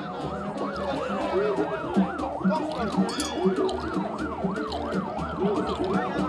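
An electronic siren in fast yelp mode, its pitch rising and falling about three times a second without a break, over a low pulsing beat.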